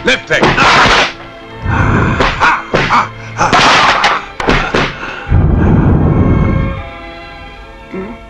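Kung fu film soundtrack: loud shouts and hard thudding hit sound effects in quick bursts, followed by a deep rumble and film music.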